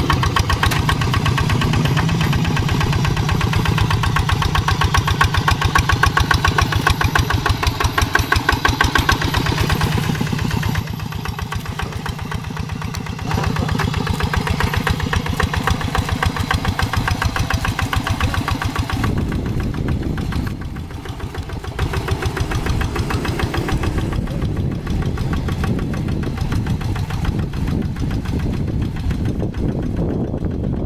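Quick G3000 Zeva two-wheel hand tractor's single-cylinder diesel engine running hard under heavy tilling load in deep mud, with a fast, even chugging beat. The level dips briefly twice, about a third and about two-thirds of the way through.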